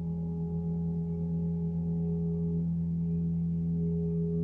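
A 36-inch cosmo gong ringing in a long, steady wash of sound, with a low fundamental and several overtones that slowly pulse. There is no fresh strike.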